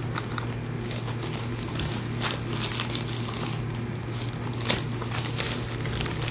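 Hands handling things in a box of packing paper and cables: scattered rustles and light knocks, the sharpest a little before the end, over a steady low hum.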